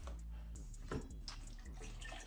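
Faint handling sounds of small objects, with two light clicks about a second in and a little later.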